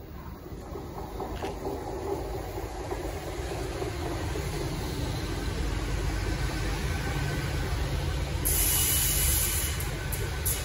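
A Great Western Railway Hitachi Intercity Express Train running alongside the platform on its underfloor diesel engines, the rumble of engines and wheels on the rails growing steadily louder as the carriages come level. A short burst of hiss comes near the end.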